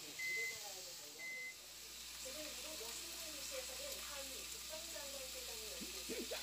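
Small tap bell on the floor, rung twice by the dog: two short, clear dings about a second apart. Under it a steady sizzle carries on throughout.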